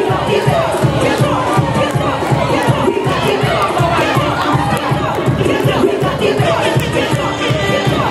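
An audience cheering and shouting over loud dance music with a steady, fast beat.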